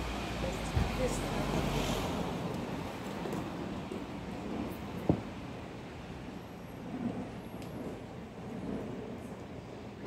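Street ambience with road traffic: a vehicle's low rumble during the first two seconds fades into a steadier background hum, with a few sharp knocks, the loudest about five seconds in.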